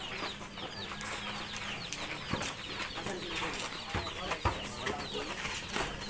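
Chickens clucking steadily in the background, with a couple of low thuds about four seconds in from a basketball bouncing on the hard dirt court.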